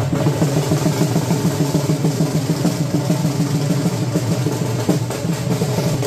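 Music driven by fast, continuous drumming.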